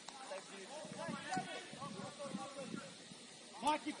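Players' voices shouting and calling to each other across an open football pitch, faint and distant. A sharp knock comes near the end, followed by a louder shout.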